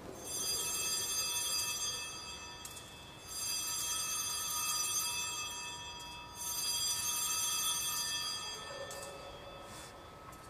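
Altar bell rung three times, about three seconds apart, each ring a cluster of bright tones fading away. It marks the elevation of the chalice at the consecration.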